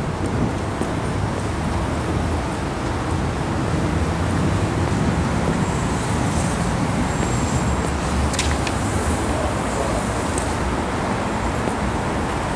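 Steady low rumble of city traffic, with a few short clicks about eight seconds in.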